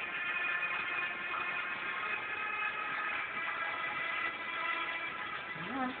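Background music with steady, sustained tones.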